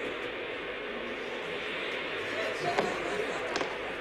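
Steady studio audience laughter, with two short knocks close together near the end.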